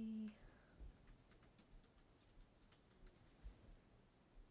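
Faint, irregular clicking of computer keyboard typing.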